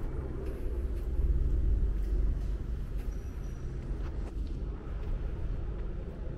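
Outdoor street ambience: a low rumble, swelling about a second in and easing after two and a half seconds, with a few faint ticks.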